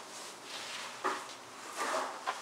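Wet string mop swishing and rubbing across a concrete floor in side-to-side strokes, with two louder swipes, one about a second in and one near the end.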